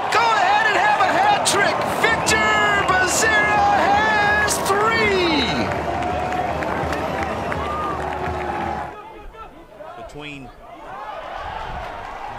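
Stadium crowd cheering and shouting after a goal, with excited voices over the noise. It cuts off suddenly about nine seconds in, leaving quieter outdoor field sound.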